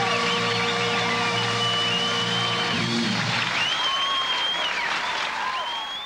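Live concert ending: a woman singing into a microphone over a band holding a sustained chord that stops about three seconds in, with audience applause through the second half.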